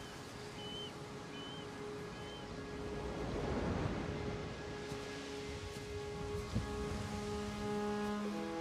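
Film score: soft held orchestral notes that build towards the end, over a steady wash of sea surf. A few short high chirps sound in the first two and a half seconds, and there is a low thump about six and a half seconds in.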